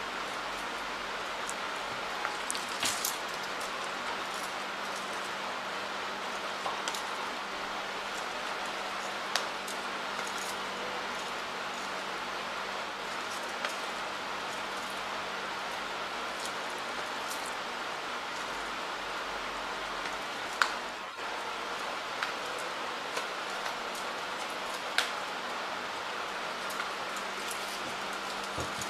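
Tarot cards being handled off-camera: a handful of light clicks and taps scattered over a steady faint hiss.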